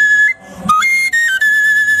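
Film score melody on a high flute or whistle. A long held note breaks off about half a second in, then a few quick stepping notes lead into another long held note.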